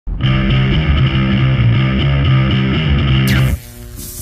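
Distorted electric guitar riff played as intro music, loud and dense, cutting off sharply about three and a half seconds in.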